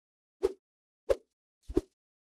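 Three short, deep thuds about two-thirds of a second apart, the last one a quick double hit: an intro sound effect.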